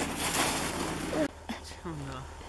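Shovel scraping and crunching in packed snow, with a brief high child's voice sound just before the noise cuts off abruptly about a second in. After that come faint scrapes and a short low voice sound.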